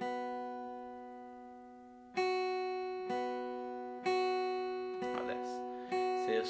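Steel-string acoustic guitar playing single picked notes that alternate between the high E string fretted at the second fret and the open B string, each note left ringing. Five notes: the first rings for about two seconds, then the rest come about one a second.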